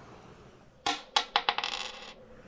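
Logo sting sound effect: four sharp metallic clicks about a second in, then a short dense jingling clatter.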